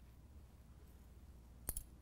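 Quiet room tone, then a single sharp click near the end as a glass test tube is fitted into a metal wire test-tube holder.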